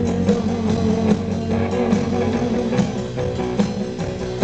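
Rock band playing live: electric guitar and bass over a steady drum beat, in a passage without vocals.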